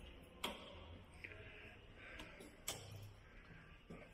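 Faint clicks of a key and door lock being worked as a door is unlocked, with two sharper clicks about two seconds apart.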